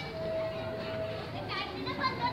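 Background voices of people, including children, talking and calling, with a steady tone for about the first second.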